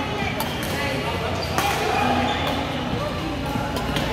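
Badminton rackets striking a shuttlecock, three sharp hits one to two seconds apart, over background voices.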